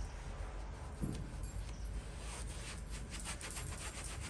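Paintbrush scrubbing thin, watered-down chalk paint into upholstered chair fabric: soft, scratchy strokes in a quick run, busier in the second half.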